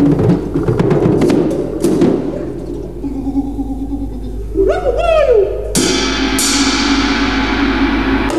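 Drum kit played freely: dense, fast strokes on the drums and toms, then a held tone and a short sliding pitched sound. Two cymbal crashes ring out near the end.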